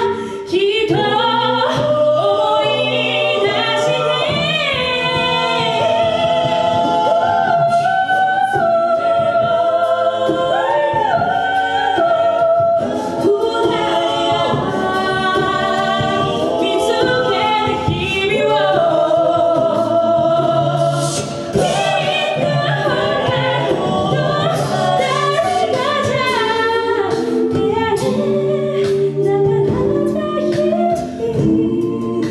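A six-voice mixed a cappella band singing live through handheld microphones. A lead voice sings over sung backing harmonies and a low sung bass line.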